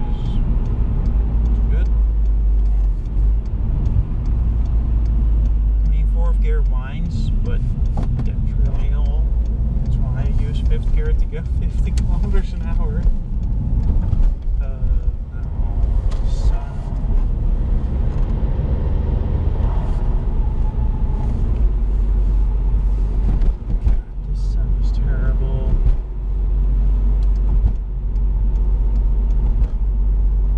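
Cabin of a 2004 Seat Ibiza 1.8 20-valve turbo on the move: a steady low engine and road rumble that dips briefly twice, about seven seconds in and again later on.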